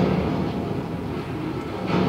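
Opening of a film trailer's soundtrack heard over a room's speakers: a sudden low hit, then a rumble, with another hit near the end.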